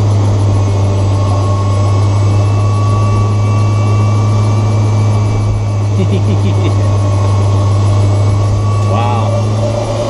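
Inside the cabin of an electric-converted BMW 320i on the move: a loud steady low hum under road noise, with a faint steady high whine from the electric drive. A brief run of clicks comes about six seconds in, and a short chirp near the end.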